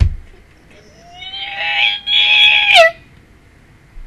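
A low thump at the start. About a second later comes a woman's loud, high-pitched excited squeal, held for nearly two seconds with a brief break in the middle and a quick falling end.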